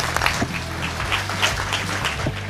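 Audience applauding: many hands clapping in a steady patter.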